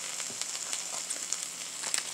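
Mayo-coated bread and smoked turkey slices frying on a flat griddle set to 325°F: a steady sizzle with small scattered crackles.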